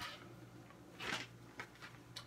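Faint rustle and swish of a guitar being swung around by its strap, with a short louder rustle about a second in, over a faint steady low hum. The swinging tests whether a water-bottle cap fitted under the strap button holds the strap on.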